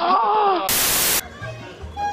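A person's voice wavering up and down in pitch, cut off after about half a second by a loud burst of static hiss that lasts about half a second and stops abruptly: a television-static transition effect between clips.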